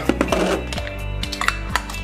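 Background music under a few light clicks and clinks of a glass jar being handled and its lid being put on.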